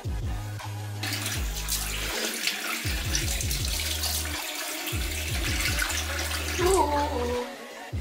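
A bathroom sink tap runs and water splashes as a face scrub is rinsed off. The water starts abruptly about a second in and stops shortly before the end, over background music with a deep bass beat.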